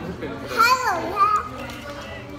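A young child's high-pitched voice, a short rising-and-falling call about half a second in and a briefer one just after, over low voices at the table.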